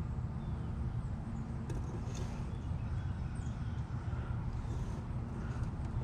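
Steady low rumble with a few faint light clicks.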